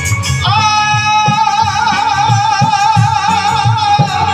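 Live Punjabi folk music through a PA: a singer holds one long wavering note from about half a second in, over regular dhol beats and keyboard.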